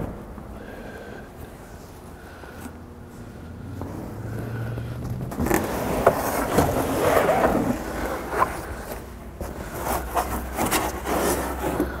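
Molded fibreboard headliner panel scraping and rubbing against the minivan's interior as it is slid in through the rear hatch. The sound starts about five seconds in and comes with scattered knocks and clicks.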